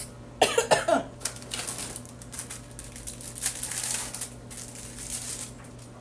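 A woman coughs near the start, followed by a few seconds of irregular rustling and handling noise that fades out.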